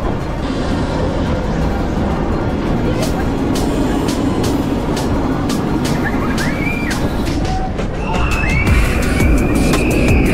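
A Vekoma suspended roller coaster heard from on board: a steady rush of wind and wheels rumbling on the track, with rapid clicking from about three seconds in. Near the end, riders scream with rising cries, the last one held, as the train drops.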